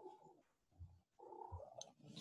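Domestic cat making faint vocal sounds: a short one at the start and a longer one just after a second in.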